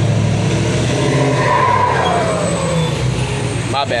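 A motor vehicle passing close by: a loud engine rumble, with a whine that falls in pitch as it goes past about two seconds in.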